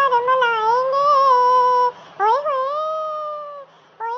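Talking Angela's high, pitch-shifted cartoon cat voice singing two long, wavering notes. The second note starts with an upward swoop about halfway through and fades shortly before the end.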